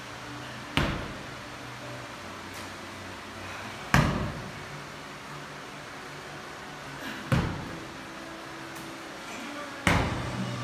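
Heavy slam balls thrown down hard onto a rubber gym floor: four thuds about three seconds apart, each with a short echo.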